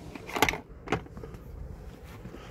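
Handling noise as the OBD2 scanner and its cable are taken out of a cardboard box: two brief scrapes about half a second and a second in, then faint rustling.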